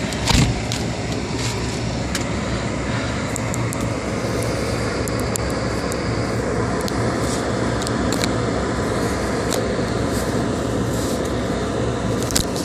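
Steady road noise heard inside a moving car: the low rumble of engine and tyres on a wet road, with scattered irregular ticks of rain hitting the windshield and a knock about half a second in.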